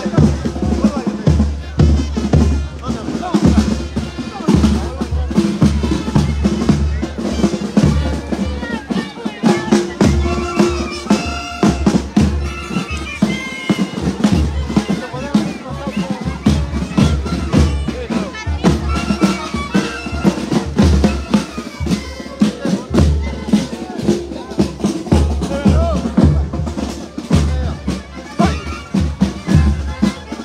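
A street band of clarinets and other wind instruments playing a marching tune over a steady bass drum and snare drum, with crowd voices mixed in.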